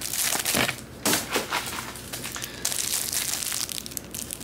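Plastic shrink wrap around a bundle of prop banknotes crinkling as hands grip the bundle and pick at the wrap, in irregular crackly bursts.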